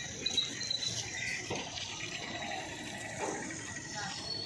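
Steady outdoor background hiss beside a road, with a few short, faint high chirps in the first second.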